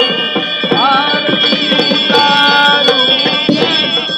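Aarti music with fast drumming under many sustained tones. A melody instrument slides up in pitch about a second in.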